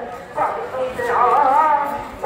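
A voice singing with long, wavering held notes, broken by a short pause about half a second in.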